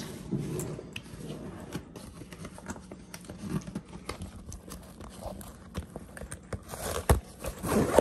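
Handling noise of a nylon roller bat bag: fabric rustling and scattered small clicks as its pockets and zipper pulls are worked, with a dull thump about seven seconds in.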